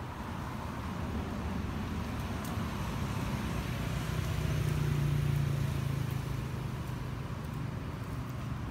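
A low engine drone from a passing motor vehicle, building to its loudest about halfway through and then easing off.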